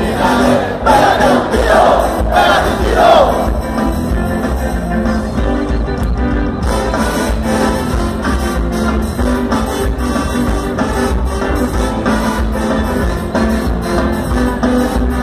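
Ska band playing live, heard from within the audience, with the crowd's voices loud over the music in the first three seconds before the band carries on steadily.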